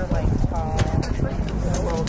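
Several voices talking over one another on a ball field, with scattered short sharp slaps of hands as the players meet in a postgame handshake line.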